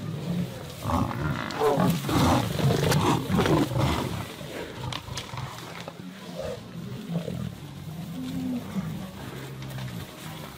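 Lions and Cape buffalo in a fight: growls and bellows, loudest and densest between about one and four seconds in, then fewer, quieter calls over the low rumble of the running herd.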